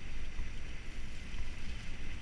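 Wind buffeting an action camera's microphone with a steady low rumble, over the hiss of mountain-bike tyres rolling fast down a dirt trail covered in dry leaves.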